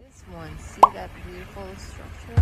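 Faint voices, with a single sharp pop about a second in.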